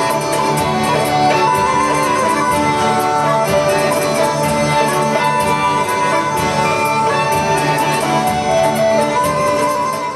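Traditional southern Italian folk music from a band, with steady held drone tones under the melody from a bagpipe and a light, regular beat.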